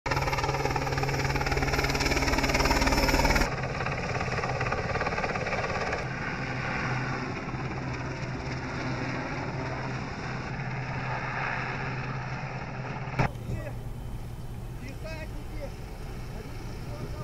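Sea King-type twin-turbine helicopter hovering, its rotor chopping over a steady turbine hum, loudest in the first few seconds. The sound changes abruptly several times as the shots cut. A sharp knock comes just after the 13-second mark, and after it the helicopter hum gives way to a quieter, mixed sound.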